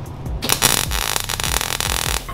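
MIG welder arc crackling as a bead is laid, starting about half a second in and running to the end, over background music with a steady electronic beat.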